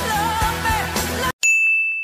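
A pop-rock song with a woman singing cuts off dead about a second in. It is followed by a single bright ding sound effect that rings on and slowly fades.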